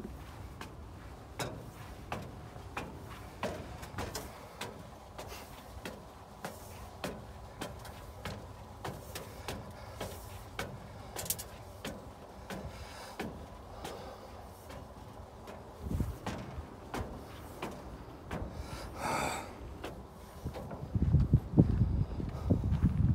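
Footsteps climbing perforated steel stair treads: a steady series of short metallic knocks, about three steps every two seconds. Near the end a louder low rumble sets in.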